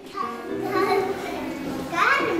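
Young children's voices chattering indistinctly in the background, softer than the teacher's speech around them.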